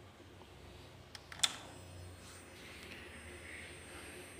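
A sharp click as a homemade HID xenon ballast is switched on and the lamp strikes, followed by a faint, steady high-pitched whine from the running ballast.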